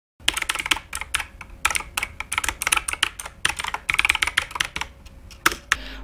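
Typing on a computer keyboard: quick, irregular runs of key clicks broken by short pauses, stopping just before the end.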